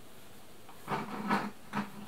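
Glass jam jars shifting and knocking softly against one another as a stack of them is held in the arms, beginning about a second in after a quiet moment.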